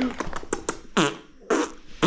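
Loud smacking mouth noises made with the lips pressed to a baby's cheek: three short bursts about half a second apart, after a quick run of small clicks.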